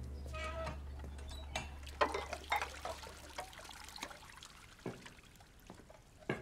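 Faint kitchen ambience from the episode's soundtrack: scattered light clinks and knocks of dishes and utensils, with a brief pitched squeak near the start. Under them is a low hum that fades out about halfway through.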